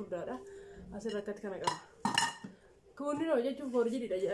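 A pot and its lid being handled, with two sharp clinks about two seconds in, under a woman talking.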